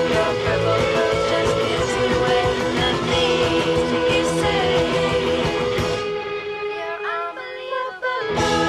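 Live rock band playing electric guitar, bass and drums, with some singing. About six seconds in the drums and cymbals drop out, leaving quieter held guitar notes, before the music cuts abruptly back in at full strength.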